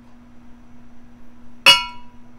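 One sharp clink of a small marbled ceramic pour cup being set down against hard dishware, near the end, ringing briefly with a few clear tones.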